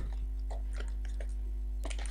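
A few faint taps and clicks of a cardboard box being turned over by hand, over a steady low hum.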